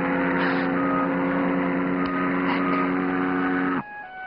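Ship's horn sounding one long, steady, low blast that cuts off suddenly near the end: the signal of a ship about to depart.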